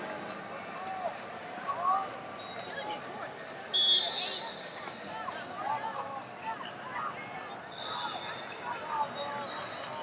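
Wrestling-tournament arena background: scattered shouts and calls from spectators and coaches on all sides. A short, high whistle blast sounds about four seconds in, and a fainter, longer high whistle-like tone comes near the end.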